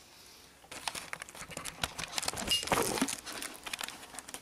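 Close, irregular rustling and crinkling handling noise, starting about a second in.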